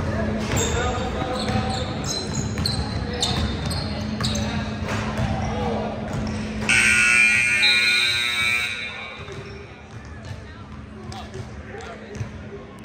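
A basketball bouncing on a hardwood gym floor, then the scoreboard horn sounds once, steady and loud, for about two seconds, about seven seconds in, signalling the end of the game.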